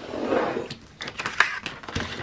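A hand-held craft cutter drawn along a steel ruler, slicing through a strip of paper in one short scraping stroke, followed by a few light clicks and taps.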